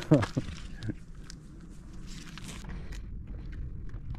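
Walking steps of people and a pack donkey's hooves on a paved road, after a brief bit of voice at the very start.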